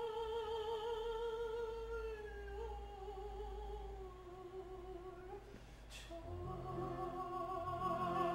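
A singer in a chamber opera holds one long note with vibrato. The note slowly sinks and fades out about five and a half seconds in. After a brief click near six seconds, the instrumental ensemble enters with lower held notes over a bass line.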